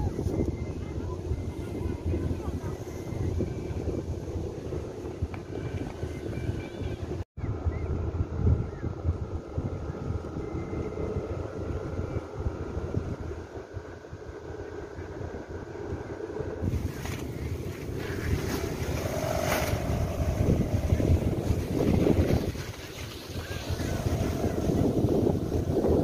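Wind rumbling on the microphone in the open, with people's voices in the background and faint steady humming tones coming and going.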